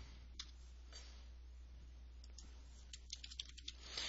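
Faint clicking of a computer keyboard and mouse: a few scattered clicks, then a quick run of keystrokes typing a word near the end, over a low steady hum.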